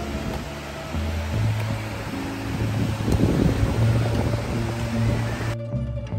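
Background music laid over the rush of waves breaking on a sandy beach. The surf noise cuts off suddenly near the end, leaving only the music.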